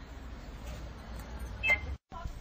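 Outdoor street background noise, a steady low rumble, with one short, sharp high-pitched sound near the end.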